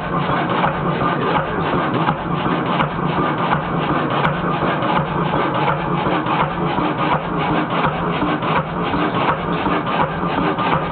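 Kelvin K1 single-cylinder marine engine running steadily on diesel after a petrol start: a loud, fast, even clatter of firing strokes.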